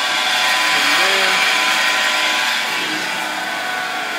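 Homemade 12-inch flat lap running: its 1/2 HP Leeson electric motor and pulley drive hum steadily, mixed with the hiss of the water drip feed splashing on the spinning steel disc.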